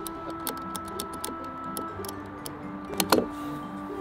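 Small irregular clicks of the number wheels on a combination key lock box being turned while trying codes, over steady background music.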